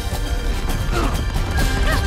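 Film chase soundtrack: loud action music mixed with heavy thuds and crashing impacts of the running chase, with a few short falling-pitch sounds about a second in and near the end.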